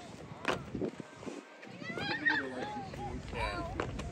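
Indistinct voices of several people talking, with no clear words.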